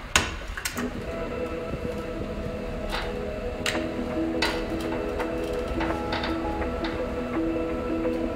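A sharp click as a cassette player is switched on, then a cassette tape loop plays held, droning notes that step from one pitch to another, with a few light clicks along the way.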